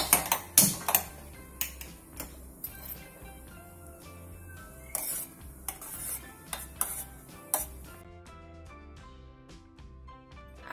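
Metal spoon clinking and scraping against a stainless steel pot as it stirs hibiscus petals in water: a run of sharp clinks, loudest at the start, that stop about eight seconds in. Background music plays underneath.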